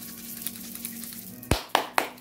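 A hand rubbing over clothing on the body, then three sharp pats a quarter second apart near the end, the first the loudest: self-massage and tapping done as a grounding exercise.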